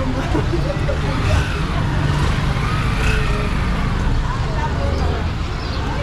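Street ambience: passersby talking nearby over a steady low rumble of road traffic.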